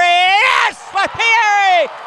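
A man's excited voice calling a basketball dunk: two long, drawn-out shouts, the first rising in pitch and the second falling away near the end.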